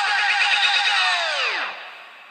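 Electronic dance music: a buzzing synth chord pulsing rapidly, then its pitch falls away in a downward sweep, like a power-down, and fades out about a second and a half in.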